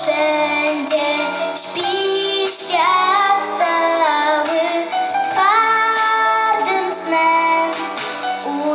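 A girl singing a Polish Christmas carol (kolęda) into a microphone, her melody moving between held notes, over a steady low instrumental accompaniment.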